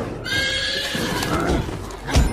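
A horse whinnying: one high, wavering call of about a second.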